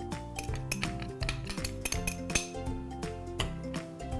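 A metal spoon clinking and scraping against a glass bowl as diced chicken is mixed with cornstarch, with background music playing steady notes underneath.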